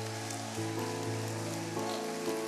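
Soft sustained keyboard chords, changing about half a second in and again near the end, over a faint steady hiss.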